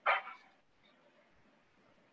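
A dog barking once, a short sharp bark over an otherwise quiet open microphone.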